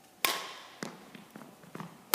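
A single sharp smack about a quarter of a second in, echoing around the sports hall, followed by several lighter taps and clicks of shoes moving on the wooden court floor.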